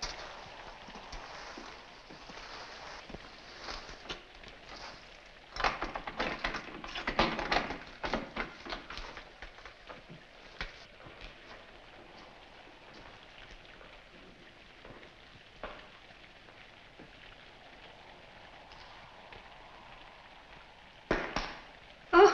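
Steady rain of a storm outside. About six to nine seconds in there is a run of footsteps and knocks, and a short clatter near the end.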